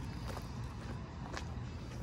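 Outdoor background ambience: a steady low rumble with a faint tap about a second and a half in.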